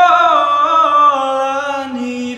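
A man singing a long, held phrase that slowly falls in pitch.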